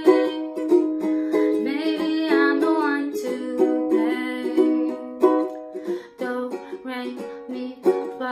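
Ukulele with a capo, strummed in steady rhythmic chords. The strumming gets softer about six seconds in.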